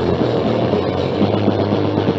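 Thrash/punk band playing an instrumental stretch with distorted electric guitar and bass, heard from a lo-fi cassette home recording; the dense, buzzing guitar tone is held steady with no vocals.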